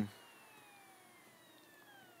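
A faint whine falling slowly in pitch as the MacBook's disc or hard drive spins down while the machine shuts off to restart.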